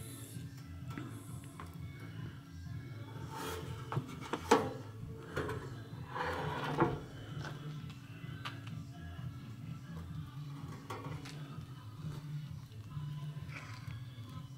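Wooden beehive lid with a sheet-metal roof being handled and turned over, with a few short knocks and scrapes of wood around four to seven seconds in, over a faint steady low background.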